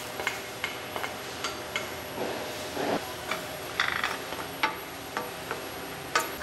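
Irregular light taps and clinks of a wooden spatula against stainless steel skillets as sautéed caruru greens are scraped from one pan into another, with a short scraping sound about two seconds in and a brighter metal clink near four seconds.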